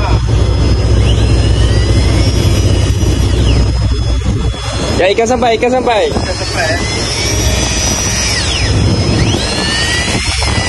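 Electric jigging reel winding in line against a hooked fish, its motor whine rising and falling in pitch several times over a steady low rumble. A man's voice calls out about halfway through.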